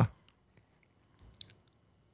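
A pause in a man's talk at a close microphone: near silence after a drawn-out "uh", broken by a few faint clicks about a second and a half in.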